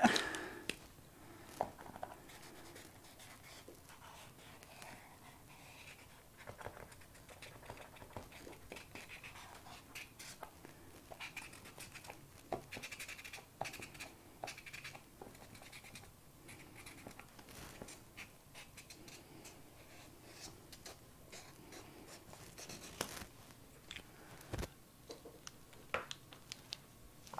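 Acrylic paint marker drawing on sketchbook paper: faint, intermittent scratching strokes of the nib, with occasional small clicks and taps.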